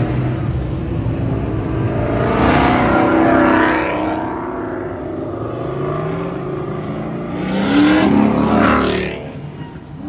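Ford Mustangs accelerating hard past on the road, engine pitch rising as they pull away. Two loud passes, about three seconds in and again near eight seconds.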